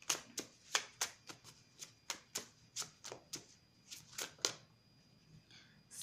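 Hand shuffling a deck of cards: a quick run of crisp card slaps, about four a second, that stops about four and a half seconds in.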